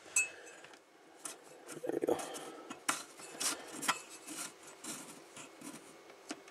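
Small pliers working the nut on a panel-mount fuse holder in a metal power-supply chassis: scattered light metal clicks and scrapes, with a sharp click just after the start.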